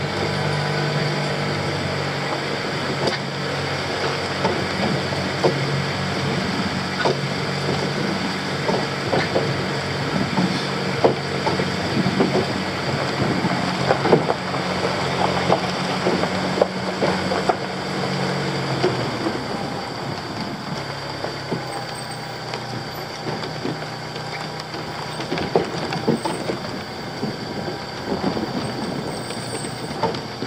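A 1999 Honda CR-V's four-cylinder engine running as the car drives slowly over a rough dirt track. It carries a load of bamboo poles on the roof rack, and there are frequent knocks and rattles throughout. About two-thirds of the way through, the engine note drops lower and quieter as the car eases off.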